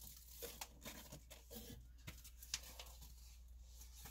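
Faint rustling of plastic packaging and a scatter of light taps as items from the box are handled, over a low steady hum.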